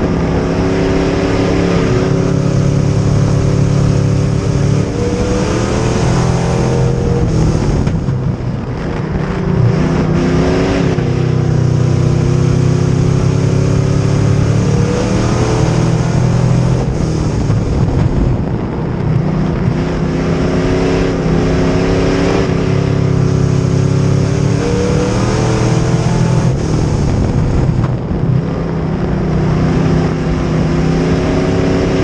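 A Bomber-class dirt track race car's engine, heard from inside the cockpit at racing speed. It is loud throughout, its pitch climbing and dropping in repeated cycles about every 8 to 10 seconds as the throttle goes on and off around the laps.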